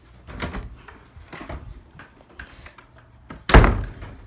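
A single loud thud about three and a half seconds in, after a few quieter knocks and rustles.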